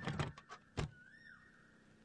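Four sharp knocks in the first second as a man climbs up onto a cycle rickshaw, followed by a short high squeak that rises and falls.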